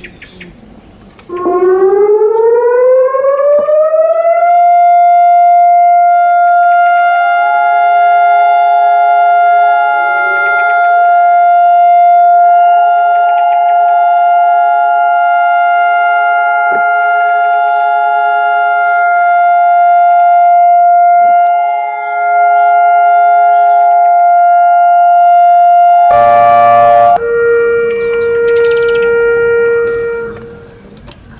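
Israeli national memorial siren, a civil-defence siren sounded for the standing silence of remembrance. It rises in pitch for about three seconds, then holds one loud steady tone; near the end the tone shifts lower.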